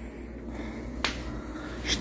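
A single sharp click about a second in, over a faint steady low hum.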